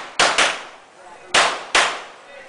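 Pistol shots fired in two quick pairs: two shots in rapid succession, then another pair about a second later, each with a short echo off the range walls.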